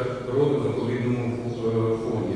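A man talking steadily in a low, fairly level-pitched voice.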